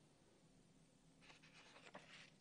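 Near silence, then a faint scratchy paper rustle starting a little over a second in.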